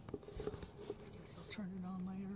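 A person's quiet voice: a few faint clicks and mouth or breath noises, then a drawn-out hesitation sound like "uhhh" held on one pitch near the end.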